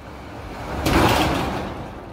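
A whoosh sound effect from an animated logo intro: a rushing noise that swells for about half a second, then fades away over a low rumble.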